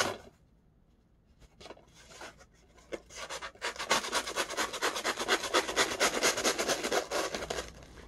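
Corrugated cardboard mailer being cut and torn open by hand: a few scattered scratches, then from about three seconds in a fast, continuous rasping.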